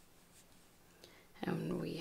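Faint, soft clicks and rubbing of wooden knitting needles working chunky yarn, stitch by stitch. A woman's voice starts about one and a half seconds in.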